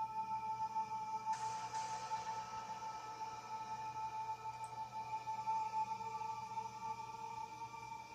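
Quiet background music of sustained ambient tones: a steady held note with fainter higher tones, joined by a soft shimmering layer about a second in.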